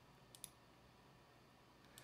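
Near silence: room tone, with two faint clicks close together about a third of a second in.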